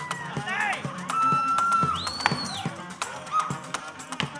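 Live acoustic string band playing an instrumental passage: bowed strings with sliding, swooping high notes and one held note, over a bowed upright bass and cello, with sharp percussive taps throughout.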